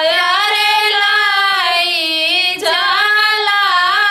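Two women singing a suhag wedding folk song together, unaccompanied, holding long drawn-out notes with a short breath about two-thirds of the way through.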